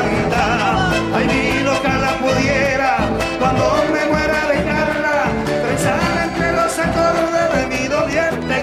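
Live Argentine folk music: a man sings long, wavering notes with vibrato over a guitar-led band.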